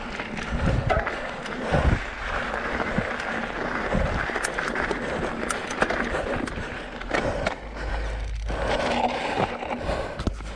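Mountain bike riding fast down a dry dirt and gravel trail: knobby tyres rolling and crunching over the ground, with frequent sharp clacks and rattles as the bike hits stones. A low rumble of wind on the microphone comes in around the eighth second.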